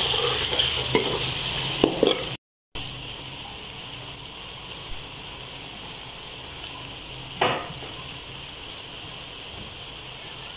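Onion-tomato masala frying in oil in a metal karahi, sizzling while being stirred with a slotted metal spatula for the first couple of seconds. After a brief cut to silence it goes on as a quieter steady sizzle, with a single knock about seven and a half seconds in.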